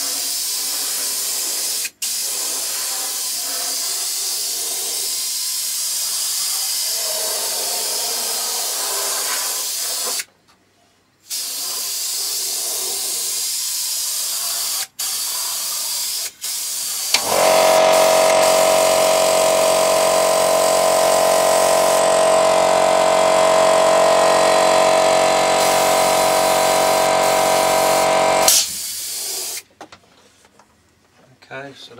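Airbrush hissing as it sprays, the trigger let off briefly a few times. About seventeen seconds in, a compressor motor starts and runs with a loud steady hum, cutting out shortly before the end.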